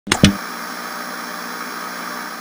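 Two quick clicks right at the start, then a steady hiss of static noise, like a detuned television or worn VHS tape.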